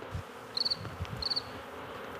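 Cricket chirping in the night forest: two short, pulsed, high-pitched chirps about half a second apart, over a steady hiss.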